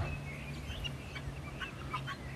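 Farm fowl calling faintly: short scattered calls over a low steady hum.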